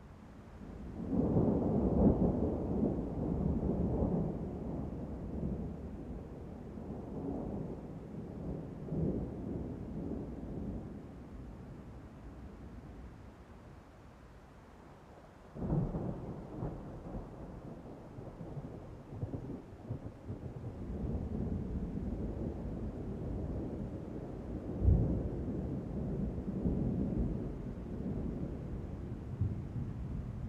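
Wind buffeting the camera's microphone: a low, gusting rumble that swells and fades, drops to a lull, and starts again abruptly about halfway through.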